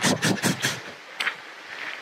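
A man imitating, with his voice, a strange noise he heard in the bush: a quick rasping run of about six breathy bursts in half a second, then quieter with a single click a little past a second in.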